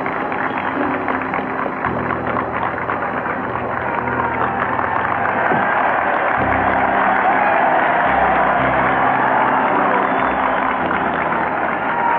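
Music of long held chords that shift about two seconds in and again around six and a half seconds, over the noise of a large crowd cheering and applauding. The sound is thin and muffled, as in an old archival recording.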